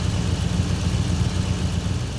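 A large engine running steadily with a deep rumble and a hiss over it.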